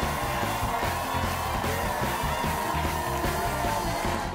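Music with a steady, repeating bass line.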